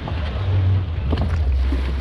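Wind buffeting the microphone outdoors: a steady low rumble under a faint hiss.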